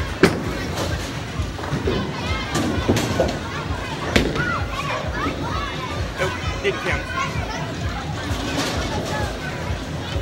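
Bowling alley din: a bowling ball thuds onto the wooden lane just after release and rolls away, with sharp knocks of ball on pins a few seconds later. Background music and other bowlers' chatter run throughout.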